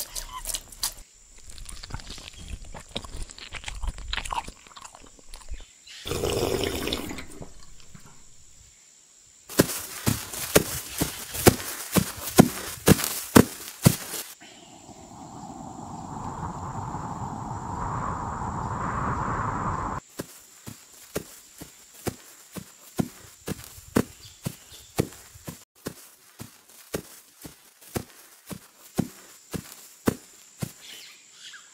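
A run of added sound effects: scattered clicks and knocks, then a smooth whoosh that swells over about five seconds and cuts off suddenly. After that come sharp, regular steps at about three a second.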